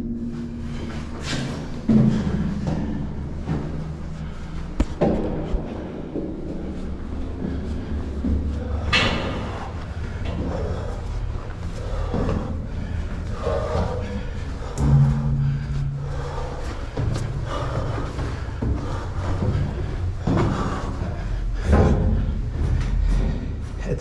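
Footsteps and knocks on a steel ladder inside a ship's cargo crane, with several sharp thumps spread through, over a steady low hum.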